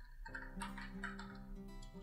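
Computer keyboard keys clicking as a word is typed, a string of quick keystrokes, over faint background music holding steady notes.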